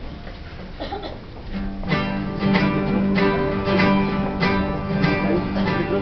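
Acoustic guitars strumming chords, starting about two seconds in after low room noise: the introduction to a sung hymn.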